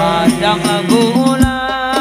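Male voices singing a sholawat (Islamic devotional song) in long, wavering held notes through a PA, over hadroh-style hand-drum percussion with low thumps and light high ticks.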